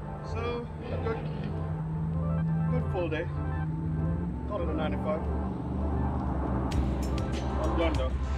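Background music with a steady bass line and a vocal line. A run of quick hi-hat-like ticks comes in near the end.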